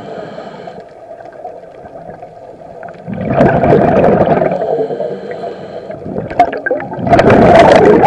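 Scuba diver's regulator breathing underwater, heard through the camera housing: two long gurgling bursts of exhaled bubbles, one from about three seconds in to nearly six and another starting about seven seconds in, with quieter stretches between.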